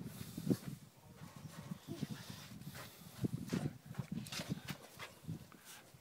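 A five-week-old Dogue de Bordeaux × Neapolitan mastiff puppy being handled and set down on a cloth-covered table. There are scattered short sounds from the puppy and light taps of paws and hands on the table.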